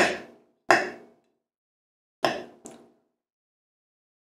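Metal fork clinking against a ceramic bowl while spearing food: one sharp clink about two-thirds of a second in, then two more close together past the two-second mark, the last with a brief high ring.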